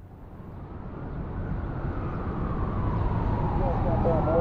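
A low rumbling noise fades in from silence and grows steadily louder, with a voice starting near the end.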